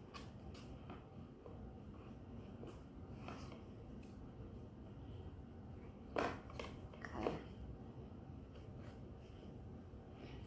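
A microfiber towel rubs over and into the slot of a wooden wood block, with soft handling clicks. Two brief, louder rubs come about six and seven seconds in.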